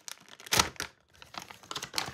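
Foil packaging crinkling and crackling as it is handled in the hands, in irregular bursts, the loudest about half a second in.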